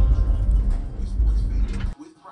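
Steady low rumble of a car driving on a road, heard from inside the vehicle, as a held note of the song's music dies away. The rumble cuts off suddenly just before the end.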